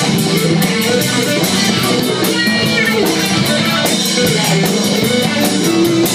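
Live rock band playing loud: electric guitar and bass guitar over a drum kit with a steady cymbal beat.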